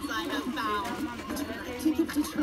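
Overlapping voices of children and an adult talking, too indistinct for the recogniser to pick out words.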